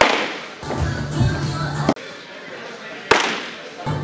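A fastball pops loudly into a catcher's mitt right at the start and echoes through the indoor hall. Another sharp pop comes about three seconds in, over background voices and a low steady hum.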